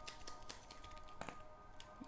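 Tarot cards being shuffled by hand, a few soft scattered card clicks, over faint steady background music.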